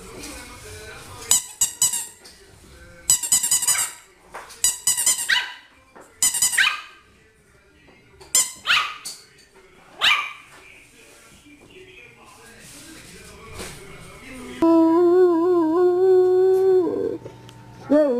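A small puppy yapping in six short, high-pitched bursts over the first ten seconds. A few seconds before the end, a large dog howls in one long, wavering note.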